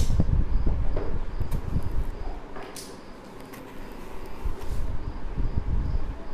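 Low rumbling handling noise from a handheld camera moving through a room, with footsteps, strongest at the start and again near the end; a sharp knock about three seconds in.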